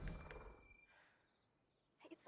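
A finger snap in a TV show's soundtrack, followed by a low rumble with faint high ringing tones that fades away within about a second.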